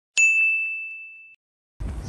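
A single bright ding, a chime-like sound effect laid over silence, ringing out and fading over about a second. It marks the on-screen count ticking up.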